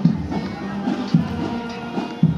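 Filipino brass marching band playing, with sustained brass notes over a steady drum beat about twice a second.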